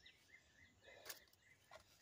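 Near silence: faint outdoor background with a row of soft, short high chirps and a single faint click about a second in.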